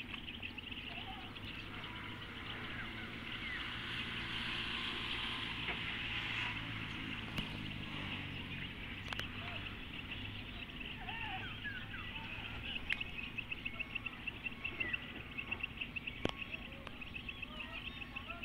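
Outdoor lakeside ambience: insects trill in a rapid, pulsing chorus, with scattered bird chirps and a few sharp clicks. In the first half a low engine hum swells and then fades away, like a distant motorboat passing.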